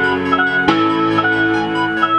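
Electronic keyboard music from the iMaschine 2 app on an iPhone: held, organ-like chords with a melody moving above them, and a new chord struck about two-thirds of a second in.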